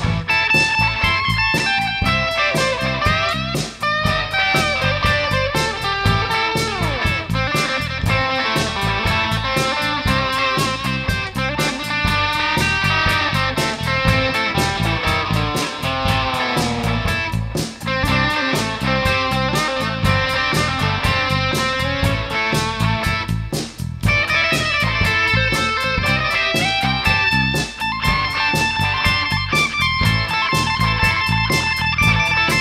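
Electric guitar solo in a rock song, lead lines with string bends over a steady drum beat.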